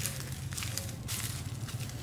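Footsteps crunching on dry leaf litter, a few steps about half a second apart, over a steady low hum.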